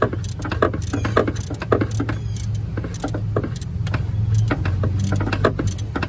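Light metallic clicks and rattles, irregular and many, as a loosened alternator mounting bolt is turned out by hand and the loose alternator shifts in its bracket. A steady low hum runs underneath.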